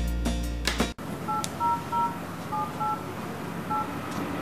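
Background music cuts off abruptly about a second in, followed by a phone being dialed: about seven short touch-tone keypad beeps in an uneven rhythm.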